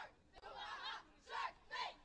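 Faint, distant voices calling out in several short bursts.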